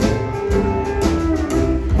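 Live country band playing an instrumental passage between sung lines: guitars, pedal steel guitar, accordion, upright bass and drum kit.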